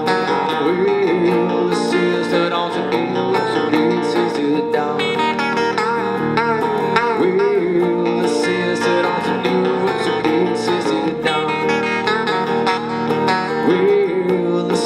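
Live country and southern rock played on two electric guitars, an instrumental passage with the lead guitar bending notes over steady rhythm playing.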